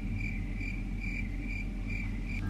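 Cricket chirping sound effect, about four even chirps a second, cutting in and out abruptly: the comic 'crickets' gag for an awkward silence while she can't find a word. A steady low hum runs underneath.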